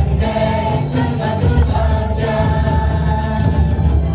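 Live praise-and-worship music: voices singing together over a band with a steady beat.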